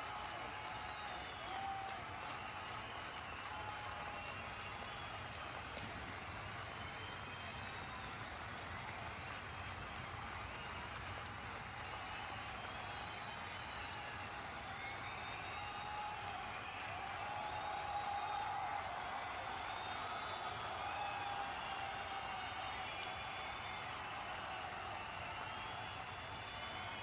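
Steady background crowd chatter: many voices overlapping in a continuous murmur, a little louder around the middle.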